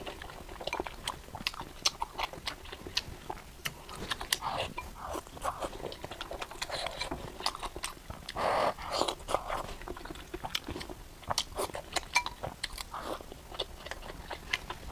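Close-miked eating sounds: wet chewing and lip smacking, with many small sharp mouth clicks throughout and a few louder wet bursts, one about four seconds in and another near the middle.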